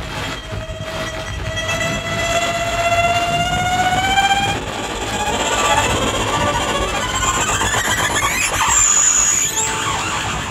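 Violin holding one long bowed note that slowly rises in pitch for about four and a half seconds, then breaking into scratchy, noisy bowing with sliding pitches. A rumbling noise track runs underneath.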